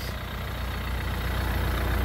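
Renault Kadjar's 1.5 dCi four-cylinder turbodiesel idling, a steady low rumble that grows slightly louder.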